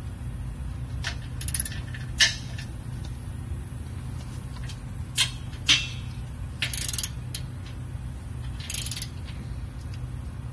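Socket ratchet clicking in short bursts as the bolts of a trailer tongue jack's mounting plate are tightened by hand, with a few sharp metallic clicks in between. A steady low hum runs underneath.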